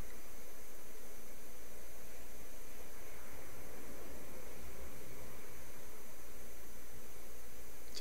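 Steady, even background hiss of room tone, with no distinct events.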